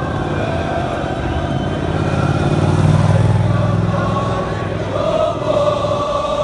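A street crowd chanting together, with a car's engine running close by, loudest in the middle and then fading.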